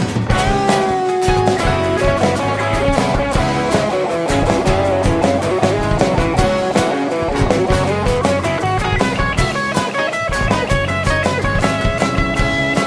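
Live rock band playing: guitars over a drum kit, with busy, regular drum and cymbal hits throughout.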